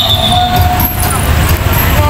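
Congested street traffic: motorbike and car engines running close by in slow, jammed traffic, a steady low rumble, with a voice heard over it.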